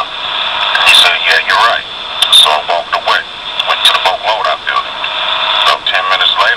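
Speech from a low-quality tape recording of a conversation: thin and tinny, with a faint hiss underneath.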